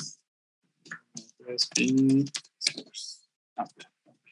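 Fingers typing on a computer keyboard, an irregular run of key clicks as a terminal command is typed. A man's voice gives a short hum about halfway through.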